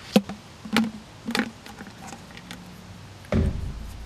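Small hard items knocking against the inside of a large water bottle as it is tipped to get them out: a few sharp taps and clicks, the first one the loudest, then a duller thump near the end.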